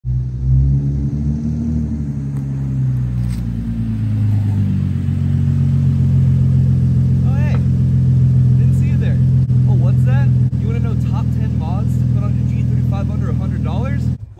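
Infiniti G35 coupe's V6 engine and exhaust, shifting in pitch for the first few seconds as the car rolls up, then idling steadily with a deep, loud note. Voices talk over it in the second half.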